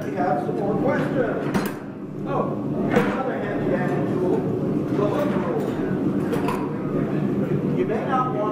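Voices talking, with two sharp metallic clinks about a second and a half and three seconds in as metal tools and bars are handled on a table.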